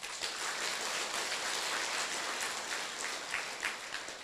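An audience applauding, starting at once and dying away near the end.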